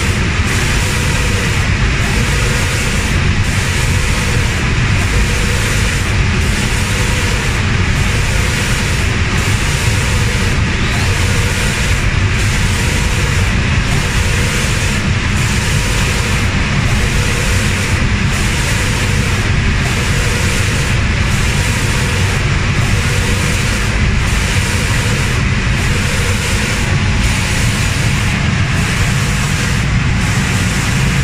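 Steady, loud hiss and roar of an automatic reciprocating spray-painting machine, its compressed-air spray guns and booth extraction running continuously.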